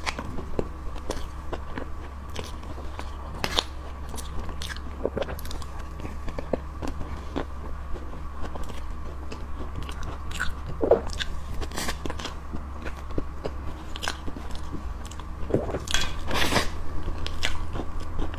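Close-miked mouth sounds of a person eating a whipped-cream layer cake with a spoon: wet chewing with many scattered short clicks, over a steady low hum.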